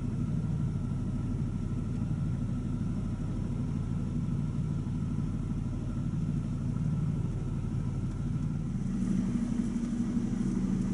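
Car engine idling, a steady low hum heard from inside the car, growing slightly stronger near the end.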